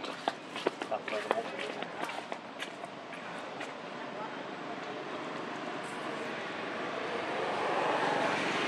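Outdoor ambience with faint background voices and scattered light clicks, then an even rushing noise that grows steadily louder toward the end.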